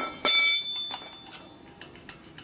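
A steel tyre lever dropped onto a concrete floor. It clangs with a bright metallic ring that dies away within about a second, and a second clink follows just after the first.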